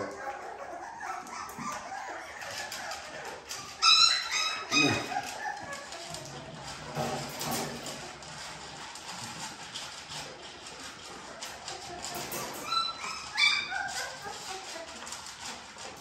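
Young puppies whining and yelping in high-pitched cries, a cluster about four seconds in and another near the end, with softer puppy noises between.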